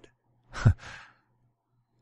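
A man gives one short, breathy laugh, a single exhaled chuckle about half a second in.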